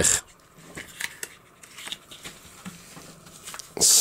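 A hard plastic toy saddle being handled and fitted back onto a flocked plastic figure, with a few light clicks and taps and soft rubbing.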